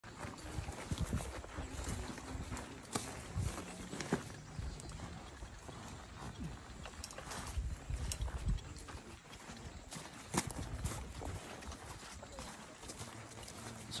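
Footsteps of a file of soldiers in boots walking past on a sandy dirt trail: irregular crunching steps with knocks from their carried rucksacks and rifles.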